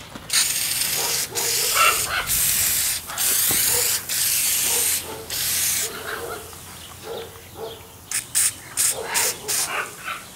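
Aerosol can of oven cleaner spraying onto cast iron stove parts: about six long sprays of roughly a second each, then a quick string of five short bursts near the end.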